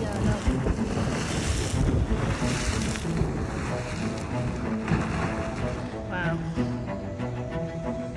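Wind rushing over the phone's microphone, with people's voices here and there. About five and a half seconds in, slow background music with held bowed-string notes comes in under it.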